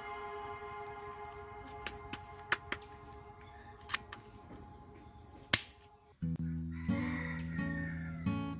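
Sharp plastic clicks, about five of them spread over a few seconds, as a small toy dart blaster's slide is pulled back and handled, over soft background music whose held notes fade away. About six seconds in, guitar music starts up.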